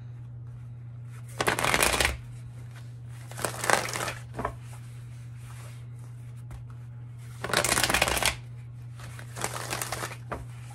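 A tarot deck being shuffled by hand in four short bursts of riffling and sliding cards, each about half a second to a second long, over a steady low hum.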